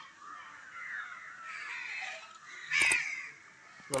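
Birds calling repeatedly, with a single sharp knock just before three seconds in.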